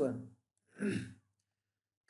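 A man's voice ending a word at the very start, then a single short audible breath, like a sigh, about a second in.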